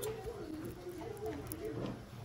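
Faint voices talking in the background, a low indistinct murmur with no clear words.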